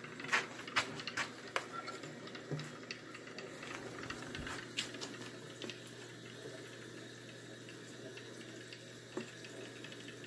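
A few sharp clicks in the first two seconds, then scattered light ticks over a faint steady low hum.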